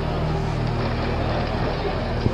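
An engine running steadily with a low hum, with people talking around it.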